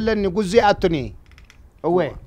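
A man talking in an animated voice for about a second, then a short pause with a few faint clicks, and a man's voice again near the end.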